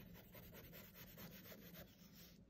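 Faint scratching of a colored pencil shading on paper, in quick, evenly repeated back-and-forth strokes.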